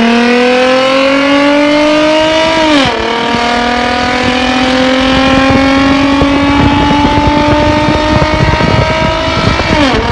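V6 car engine pulling at full throttle during a roll race, its pitch climbing steadily through the gear. The pitch drops sharply on an upshift about three seconds in, climbs again through the next gear, and drops on another upshift near the end.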